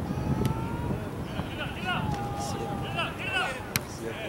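Distant shouts of players across an outdoor soccer pitch, with one sharp click near the end.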